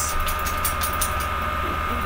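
A steady low hum with a thin, steady high whine above it: the constant background noise of the recording, heard between words.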